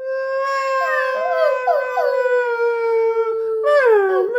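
A long, steady, howl-like wailing made by a person's voice imitating crying pets, with a second wavering voice overlapping it. A falling whine takes over near the end.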